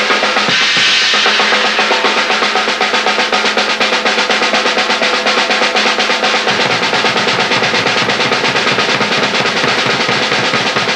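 Acoustic drum kit solo: a fast, continuous stream of strokes around the snare and toms, with bright cymbal wash over the first couple of seconds. About six and a half seconds in, rapid low bass drum strokes join underneath.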